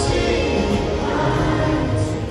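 Massed children's choir singing with amplified backing music, filling a large arena.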